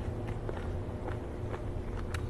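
Close-miked chewing of steamed squid: a string of soft, wet mouth clicks, about three a second, over a steady low hum.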